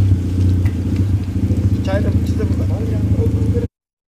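The engine of an Afghan-built sports car idling with a steady low hum, with voices nearby, until the sound cuts off suddenly near the end.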